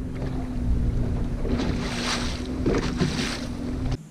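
Bass boat moving slowly on the water, its motor giving a steady low hum and rumble, with wind buffeting the microphone in two gusts, about halfway through and near the end.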